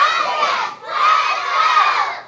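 A group of young children shouting together, taekwondo-style yells as they kick. There are two long group shouts of about a second each, with a brief break between them.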